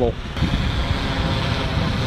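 Wind buffeting the microphone outdoors, an uneven low rumble, with a faint steady hum underneath.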